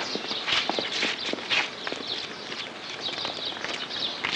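Footsteps of a group of people walking on pavement: many irregular shoe and sandal steps overlapping.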